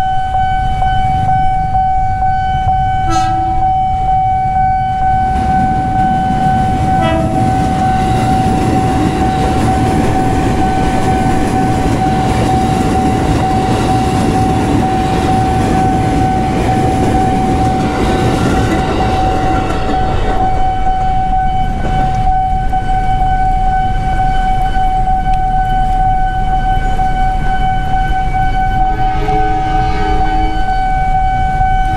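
A KRL electric commuter train runs past over the level crossing, a broad rumble of wheels and running gear from about five seconds in until about twenty seconds in. Under it the crossing's warning alarm sounds as one continuous steady tone. A short horn toot comes about three seconds in.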